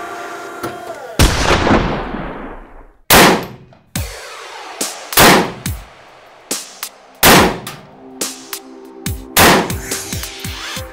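Electronic music with loud, sharp rifle shots from a VZ-58 cut in over it. The heaviest shots come about every two seconds, each trailing off in a ringing decay.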